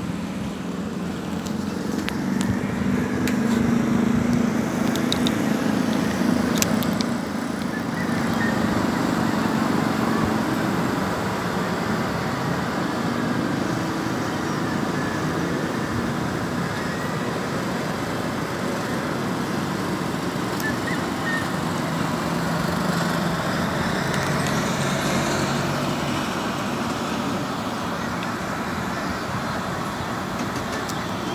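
Road traffic below: a steady wash of noise, with the low hum of passing vehicles swelling a couple of seconds in and again about three-quarters of the way through.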